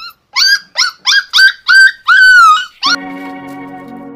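A dog yelping in six quick, high cries that each rise then drop, the last one longer and drawn out. A held music chord comes in about three seconds in.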